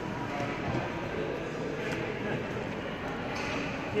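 Indoor public-space hubbub: a steady background of voices and children's chatter, with no single event standing out. A man's voice starts to speak right at the end.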